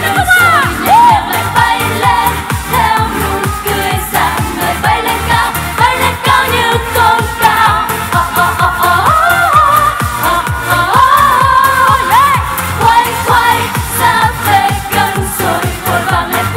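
Women singing a Vietnamese pop song over a dance-pop backing track with a steady beat.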